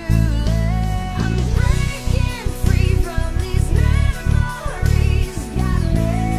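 SX Jazz electric bass through an Audere jazz preamp, played with a fat, clean tone as a bass line under a backing track of a song with a singer. Heavy low bass notes change every fraction of a second beneath held, gliding sung notes.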